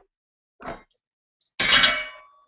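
A metal speed square set down against square steel tubing: a soft handling scrape about halfway, then a sharp metallic clink near the end that rings briefly.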